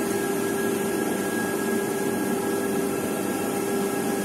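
Steady machine drone: an even whirring hum with a few steady tones running through it.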